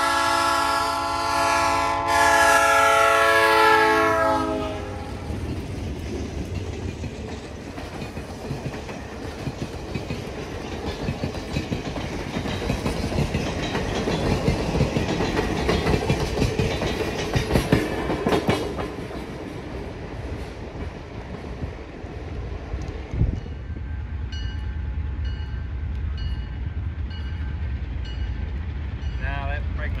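Diesel locomotive horn sounding a multi-note chord as the train approaches, with a step up in loudness about two seconds in, stopping after about four and a half seconds. It is followed by a long passing rumble of the MLW-built M420 and RS18 diesels and the passenger cars rolling by, wheels clicking over the rail joints, loudest midway. In the last several seconds comes a low diesel rumble with a level-crossing bell dinging.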